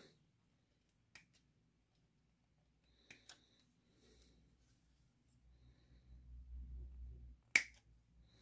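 Faint, scattered clicks and taps of plastic model-kit sprues being handled and moved over a paper instruction sheet, with a low rumbling handling noise in the second half and a sharper click near the end.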